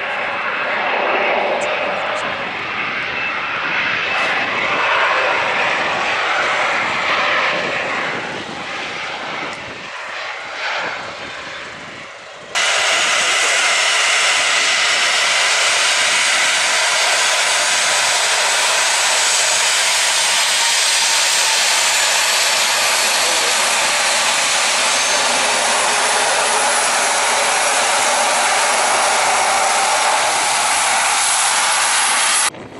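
Jet engines of a Boeing 737-300 airliner on the runway, swelling and then fading over the first dozen seconds. About twelve seconds in there is a sudden jump to a louder, steady engine hiss close by as the jet taxis past.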